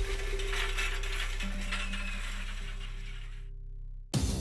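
Background music bed: sustained low synth notes that shift twice, under a fast, mechanical, ratchet-like ticking texture. The high ticking part fades out shortly before the end, leaving the low notes.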